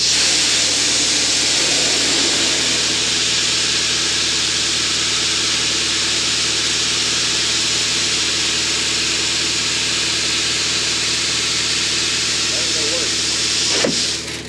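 Wheat seed pouring from bags into the steel seed box of a grain drill: a steady, unbroken hiss of grain running onto metal and onto the growing pile of seed.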